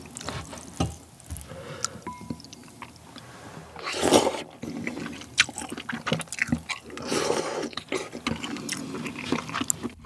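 A person slurping and chewing cold spicy naengmyeon noodles dipped in broth, close to the microphone, with wet mouth clicks and smacks throughout. There are two longer slurps, one about four seconds in and one about seven seconds in.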